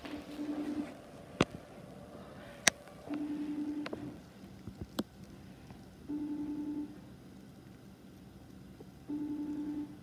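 Ringing tone of an outgoing phone call played through the phone's speaker: four short, even beeps about three seconds apart while the call waits to be answered. A few sharp clicks fall between the beeps.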